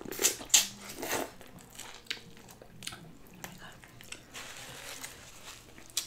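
Biting into boiled corn on the cob, close to the microphone: three sharp crunches in the first second or so, then softer wet chewing clicks.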